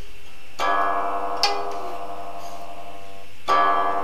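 A long board zither being plucked in a slow improvisation: a cluster of notes struck together about half a second in, another stroke about a second later, the strings left to ring with one note sliding down in pitch, then a new stroke near the end.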